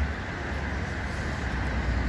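Steady outdoor traffic and vehicle noise: an even hiss with a low hum underneath and no distinct events.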